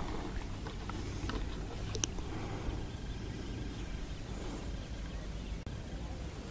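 Faint outdoor ambience on open water: a low steady rumble with a few light clicks, the sharpest about two seconds in.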